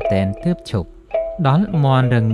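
Spoken storytelling narration over quiet background music, with a brief pause about a second in.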